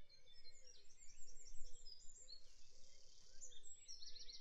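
Birds chirping faintly outdoors, in series of short, quick chirps.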